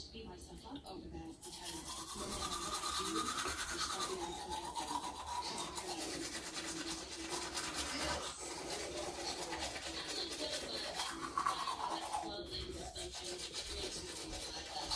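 Teeth being brushed with a manual toothbrush: a rapid, steady scrubbing that starts about a second and a half in, after a few small clicks.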